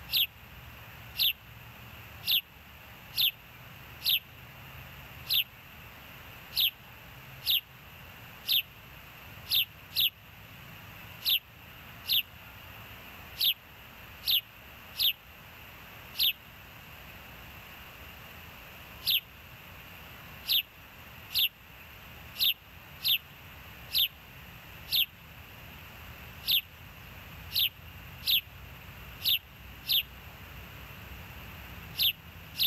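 Osprey calling on the nest: a long series of sharp, downward-sliding whistled chirps, about one a second, pausing for a few seconds midway. A steady low rumble runs underneath.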